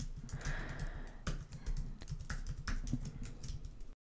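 Typing on a computer keyboard: a string of irregular key clicks as login details are entered at a sign-in prompt, cut off abruptly just before the end.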